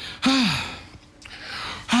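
A man's drawn-out sigh of relief, a falling breathy 'aah', followed by an audible breath and a second falling 'ah' starting near the end.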